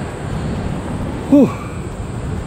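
Wind buffeting the camera's microphone: a loud, steady low rumble. About a second and a half in, a man makes a brief vocal sound that falls in pitch.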